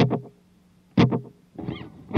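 Electric guitar through a pedalboard with slapback delay on and no reverb: two short plucked chords about a second apart, each dying away quickly.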